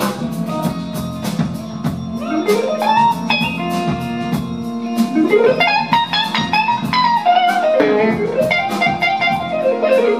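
Live blues band: a lead electric guitar solo on a semi-hollow-body guitar, with two quick rising runs about two and five seconds in, over rhythm guitars and a drum kit.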